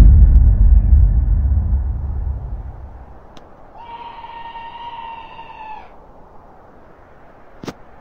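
A sudden deep boom that dies away over about three seconds, then a single drawn-out high cry, steady in pitch for about two seconds and dipping slightly as it ends.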